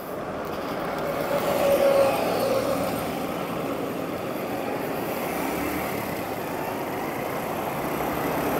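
Steady road-traffic noise from motorcycles and cars on a city bridge, a continuous rumbling hiss that swells briefly about two seconds in.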